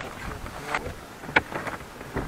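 Wind on the microphone, with a few faint clicks scattered through it.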